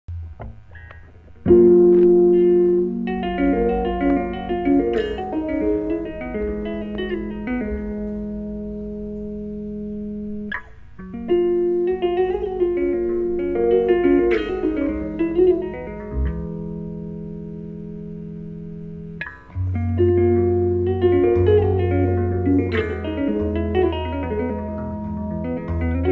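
Solo Roscoe electric bass played through Markbass cabinets, in chords and ringing chord melodies rather than single lines. Three phrases each begin with a struck chord, about a second and a half in, near eleven seconds and near twenty seconds, and ring on as higher notes are added over them; the third sits over a deep, sustained low note.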